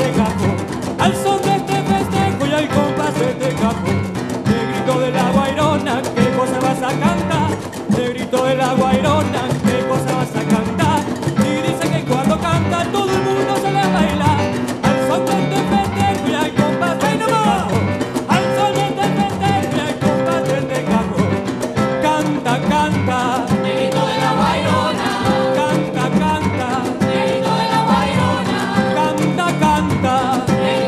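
Live Afro-Peruvian festejo played by a cajón ensemble, the box drums keeping a dense, driving rhythm with pitched melody notes over it.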